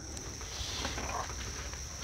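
Steady, high-pitched insect chirring, crickets, running without a break, over a faint low rumble of outdoor background noise.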